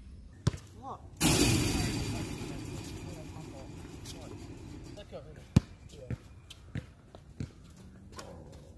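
A basketball bouncing on an outdoor asphalt court: sharp single bounces, a run of them in the second half roughly half a second apart. Under them is a steady outdoor background hiss that jumps up about a second in and slowly fades, with faint voices.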